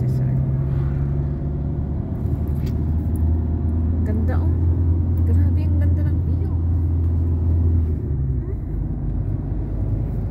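Car engine and road noise heard inside the cabin while driving: a steady low drone and rumble that drops in pitch about two seconds in and eases off near the end.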